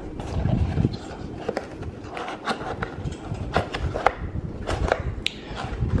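A thump as the camera is set down on a desk, then irregular scrapes, knocks and clicks of a package being handled and opened close to the microphone.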